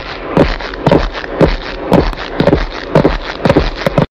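Footsteps of several people walking on paving, in a steady rhythm of about two steps a second.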